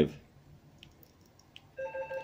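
A few faint clicks from a rotary encoder being turned, then a steady electronic tone with several pitches starting near the end.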